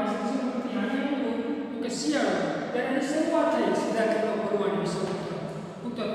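A man speaking steadily, lecturing.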